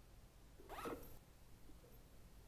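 A bag's zip pulled open in one short rasp just under a second in, over faint room tone.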